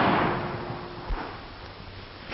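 The dying echo of a gunshot fired a moment before, fading over about a second, then a dull thump about a second in. The sound comes from an old film soundtrack with a narrow, muffled sound range.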